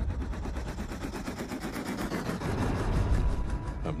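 Helicopter rotor blades chopping in a rapid, even beat, getting a little louder toward the end.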